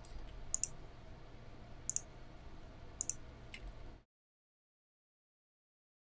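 A few sharp computer mouse clicks over faint room noise. The sound then drops to dead silence about four seconds in.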